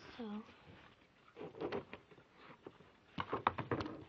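Thin plastic container being handled and wiped with a disinfecting wipe. It gives a quick cluster of plastic crackles and clicks near the end.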